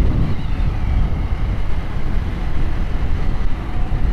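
Yamaha New Vixion 150 cc single-cylinder motorcycle running at a steady cruising speed, its engine sound mixed with a steady low wind rumble on the action camera's microphone.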